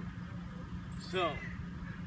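Low steady background rumble, with a man saying one short word about a second in.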